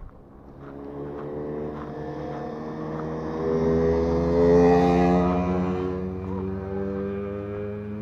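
Engine hum of a motor vehicle passing on the road, growing louder to a peak about halfway through, then fading off somewhat while still running.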